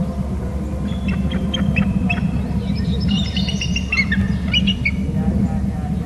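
Bald eagle calling: a series of short, high-pitched piping notes from about a second in until about five seconds, over a steady low background rumble.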